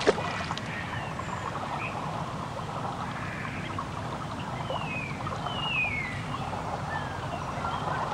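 Outdoor water-side ambience: a steady background hiss, a sharp plop right at the start, and a few short, falling bird chirps in the middle.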